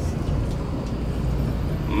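A tour bus running along the road, heard from inside the cabin as a steady low engine and road rumble.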